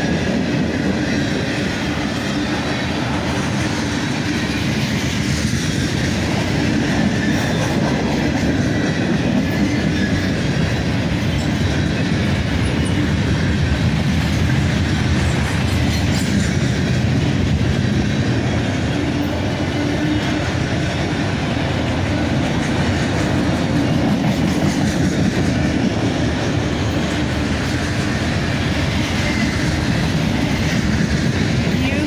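Mixed freight cars of a Norfolk Southern manifest train rolling steadily past: a loud, even rumble of steel wheels on rail.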